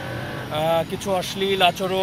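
A person talking in Bengali over a steady low street hum.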